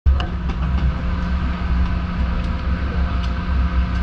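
Dive boat's engine running with a steady low rumble, with a few light clicks over it.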